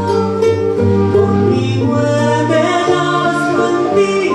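A woman singing an Andean folk song live, accompanied by a charango and guitar.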